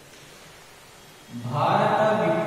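A man's voice starts about a second and a half in, loud, slow and drawn out in a sing-song way, after a quiet stretch.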